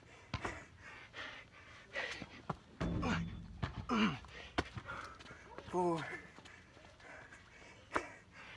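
A man panting and giving short voiced exhales while doing burpees, with soft knocks as his hands and feet hit the ground.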